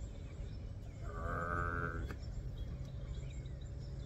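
A man's voice drawing out one long, bleat-like syllable ("All...") for about a second, over a steady low background rumble.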